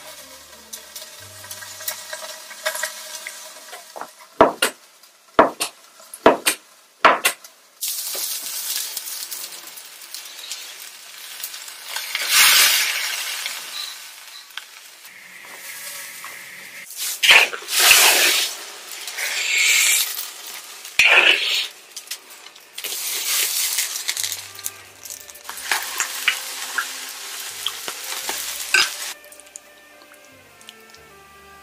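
Hot oil sizzling in a pan in several loud bursts of a few seconds each, as garlic and wild thyme are tempered in it to season the sour jiangshui broth. A few sharp clicks come in the first several seconds.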